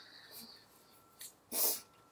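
A person moving close to the microphone: a faint hiss near the start, then one short, loud puff of noise about one and a half seconds in, from breath or clothing.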